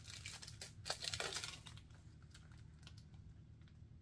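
Crinkling and rustling of a small product package being handled and turned over, busiest in the first second and a half, then fading to a few faint ticks.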